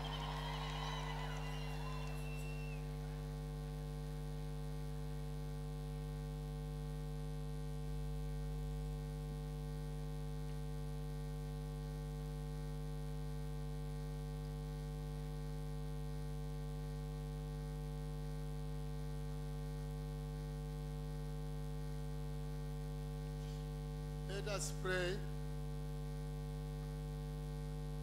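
Steady electrical mains hum from the sound system, a constant buzz of stacked low tones with no change in level.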